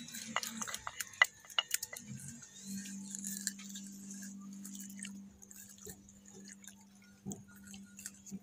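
A wooden pestle knocking in a mortar of dried turmeric, a handful of sharp clicks in the first two seconds. Then a steady low hum lasts a few seconds, over a faint high hiss.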